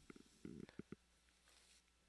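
Near silence, with a few faint, short, low rumbles in the first second, then only faint hum.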